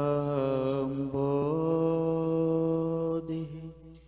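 A voice chanting a Sanskrit devotional prayer in long, drawn-out held notes, over a steady low hum. The chanting stops a little after three seconds in.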